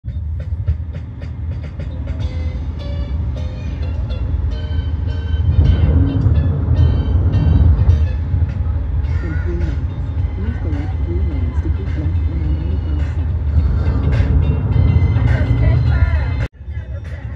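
Steady low road and engine rumble inside a car cabin at highway speed, with music playing over it.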